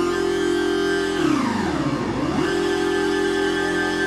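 Live electronic dance music with a held chord of sustained synth and electric-guitar tones. A little over a second in, the sound sweeps down in pitch and climbs back up over about a second before the chord returns.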